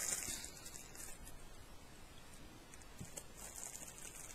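Faint rustling with a few light ticks, as small items are handled.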